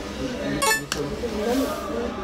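A single short, bright metallic clink, over the murmur of voices.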